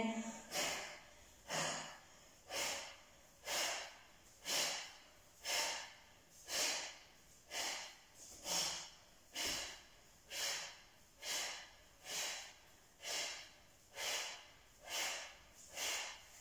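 A woman's short, sharp forced breaths out, about one a second, some sixteen in all, with quiet between them. Each exhale is a core-activating breath, pushed out as she draws her belly button towards her spine while hugging a knee in.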